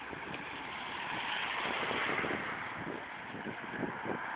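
Road traffic going by: a steady hiss of tyres and engines that swells about halfway through and eases off again.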